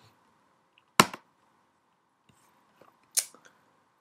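A single sharp computer click about a second in, confirming the save, followed by a few faint ticks and a short hiss just after three seconds.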